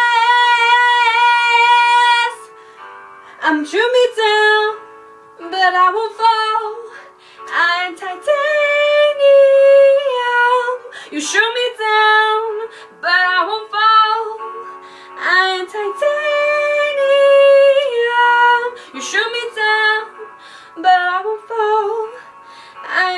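A woman belting, singing in phrases with long held notes, the first about two seconds long, and pitch slides between them.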